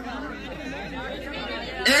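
Crowd of spectators chattering: many overlapping voices talking at once, no single voice standing out.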